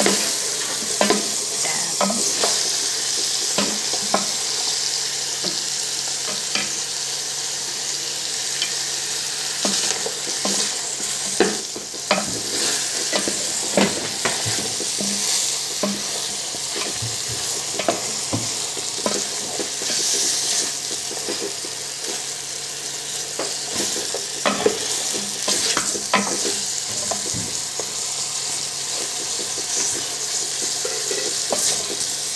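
Chunks of mutton frying in a steel pot, sizzling steadily while being stirred and turned with a wooden spoon. Frequent short knocks of the spoon against the pot run through the sizzle.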